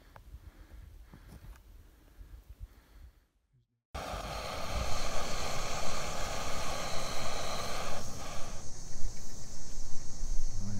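Faint wind rumble on the microphone, then, after a brief dropout, a backpacking gas canister stove burner hissing steadily and loudly under a metal pot of boiling water. The hiss thins out near the end.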